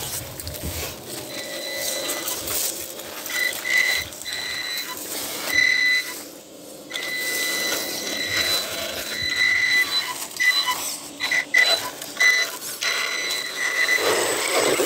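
Axial Ryft RBX10 RC rock bouncer climbing rock, its electric drive giving a thin high-pitched whine that starts and stops as the throttle is worked. Tyres scrape, crunch and knock on rock and dry leaves throughout.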